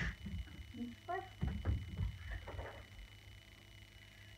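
A woman's voice giving a short command to a dog about a second in, followed by a few soft low sounds, then quiet room tone.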